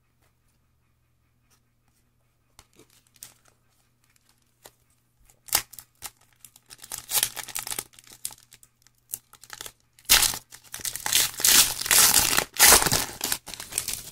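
Foil trading-card pack wrapper being torn open and crinkled by hand, quiet at first with a few small clicks and rustles, then loud, dense crackling for the last few seconds.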